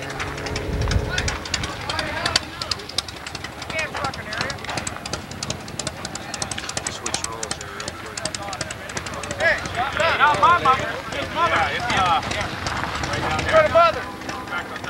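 Indistinct talking of people close by, loudest near the end, with many short clicks through the middle and a low thump about a second in.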